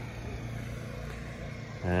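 Steady low rumble of outdoor background noise with no distinct event, and a man's voice starting just before the end.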